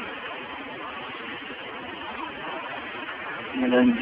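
Steady outdoor background noise with faint voices in it. A man starts speaking near the end.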